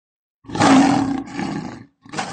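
A lion roaring: a loud, rough call starts about half a second in, then a weaker second call follows and fades out just before the end.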